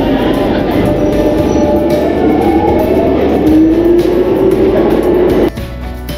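London Underground train noise echoing through the station tunnels: a loud, wavering squeal that slowly rises and falls in pitch over a low rumble. It cuts off suddenly about five and a half seconds in and gives way to quieter music.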